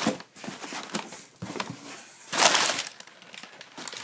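Crumpled brown packing paper rustling and crinkling as a hand pushes it aside inside a cardboard shipping box, in irregular bursts with the loudest a little past halfway.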